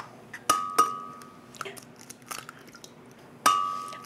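Eggs knocked against the rim of a glass blender jar to crack them: two sharp knocks, each leaving the glass ringing with a clear tone, with a smaller click shortly after the first.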